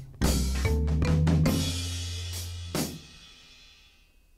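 A rock band's drums, bass and guitar playing the closing hits of a studio take: several strikes with a cymbal wash in the first seconds, a last hit near the end of the third second, then the sound dies away.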